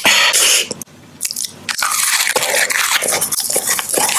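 Close-miked ASMR eating: a loud crunchy bite, a short lull about a second in, then steady crunchy chewing.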